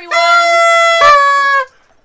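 Party horns blown in held, buzzy toots. A higher-pitched one sounds for most of the first second, then a lower one follows, and they stop about two-thirds of the way in.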